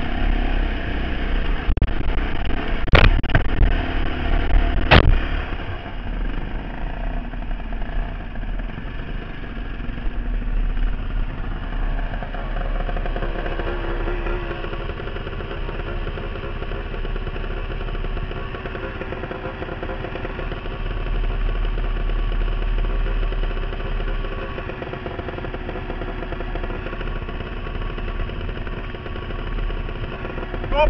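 Dirt bike engine running as the bike is ridden, with two sharp knocks about three and five seconds in. From about twelve seconds the engine settles to a steadier, lower note as the bike idles.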